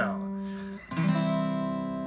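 Acoustic guitar notes plucked with the fingers: one note rings and dies away, then a new note is plucked about a second in and rings out, slowly fading. The player is surrounding a target note in the scale, stepping around it and landing back on it.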